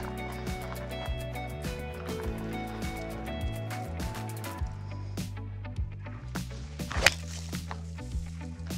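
Background music with a steady beat; about seven seconds in, a single sharp click of a four-iron striking a golf ball off bare dirt.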